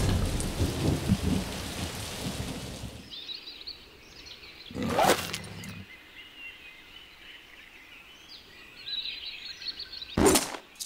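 Cartoon rainstorm: heavy rain with a low rumble, cutting off abruptly about three seconds in. Faint bird chirps follow, with one short, louder sound effect about halfway through.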